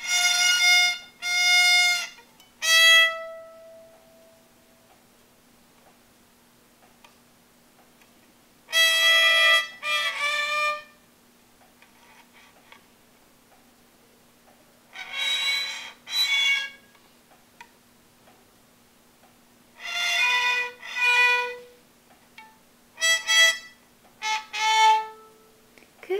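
A child's violin played by a young beginner: short bowed notes, mostly in pairs, with long pauses of several seconds between the groups.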